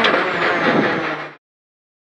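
Peugeot 208 R2 rally car's 1.6-litre four-cylinder engine heard from inside the cabin as the car slows just past the stage finish, with a sharp knock at the start and the engine note dropping lower about a second in. The sound cuts off abruptly a little over a second in.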